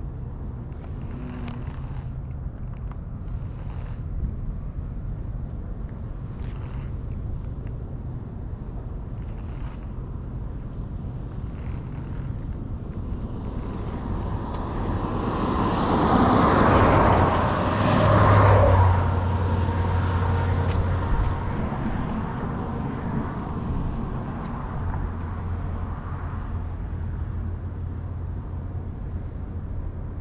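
A road vehicle passing close by, building up over a few seconds and fading away, over a steady low rumble.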